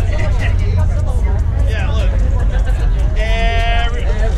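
Indistinct crowd chatter over a steady low rumble. About three seconds in comes a short high cry, held on one pitch for under a second.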